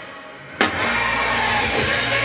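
A drum kit played along to a rock backing track. The music drops to a short hush, then a loud drum hit about half a second in brings the song and drumming back in over a steady bass note.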